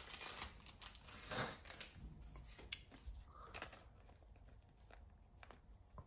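Faint rustling of a thin plastic card sleeve, with a few light ticks, as a trading card is slid into it.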